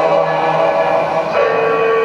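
Shigin: men's voices chanting a Japanese poem together, holding long drawn-out notes, with a new note starting about one and a half seconds in.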